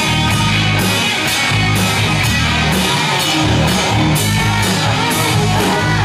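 Live rock band playing an instrumental passage, with a steady beat of drum hits about twice a second over a heavy bass line.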